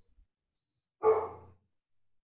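A single dog bark, sudden and loud, fading out within about half a second, heard over a video-call line.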